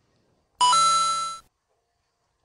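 Electronic chime, a doorbell-like ding-dong: a short low note stepping up to a higher held tone, lasting under a second.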